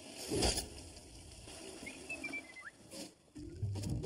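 Cartoon sound effects: a sudden hit about half a second in, then small scurrying noises and a short high squeak that slides downward about two seconds in. The score's music comes back near the end.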